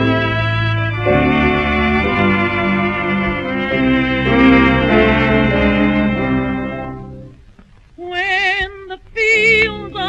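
Instrumental introduction of a 1932 music-hall song record, sustained chords that die away about seven seconds in; after a short pause a woman starts singing with a wide vibrato near the end.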